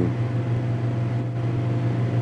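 Steady low hum with a faint higher whine and background hiss, the constant noise floor of an old film soundtrack.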